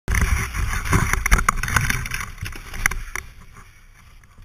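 KTM Freeride 350's single-cylinder four-stroke dirt-bike engine running as the bike crashes, with a string of knocks and thuds as it goes down. The noise dies away about three seconds in.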